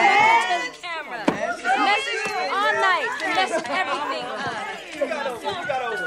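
Several voices talking over one another in continuous chatter, with no words standing out.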